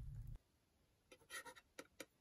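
A table knife scraping across a slice of bread in a few short strokes, spreading it, about a second in. Before that, the low rumble of a wood fire burning in a clay hearth cuts off abruptly.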